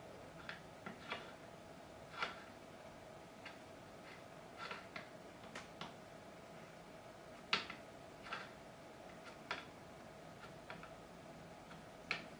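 Metal fret rocker being placed and rocked across the frets of a guitar neck, giving faint, irregular light clicks, about a dozen, the loudest about seven and a half seconds in. A faint steady hum lies under them.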